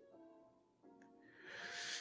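Quiet background music with steady held notes, then near the end a person drawing in a breath through the mouth.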